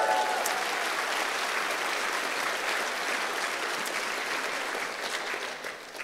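Audience applauding and cheering, with a few whoops at the start, dying down near the end.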